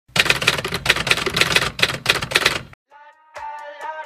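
Rapid typewriter keystrokes clattering, a sound effect for text being typed on screen, stopping just before three seconds in. After a brief pause a pop song starts with plucked notes.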